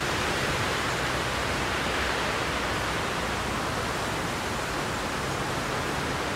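A steady, even hiss of noise with no pitch or rhythm, starting suddenly.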